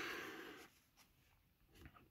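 Near silence: room tone, with a faint short hiss fading away in the first moment.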